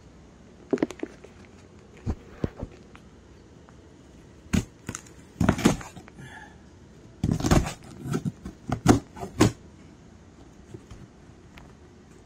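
A cardboard shipping box being handled and its packing tape slit and torn open: a string of short scrapes, rips and knocks, busiest from about seven to nine and a half seconds in.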